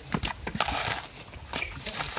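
Coconut husks being pried off on an upright husking spike: a run of sharp cracks and rough ripping noises as the fibre tears away from the nut.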